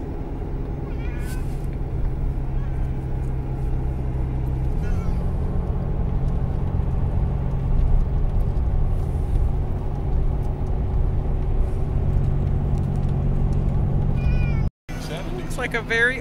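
Steady drone of engine and road noise inside a moving vehicle, with a constant low hum. A few faint, short high calls sound over it, and the sound cuts out for an instant near the end.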